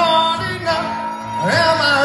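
A man singing live over an acoustic guitar. He holds one long note, then slides up into the next phrase near the end.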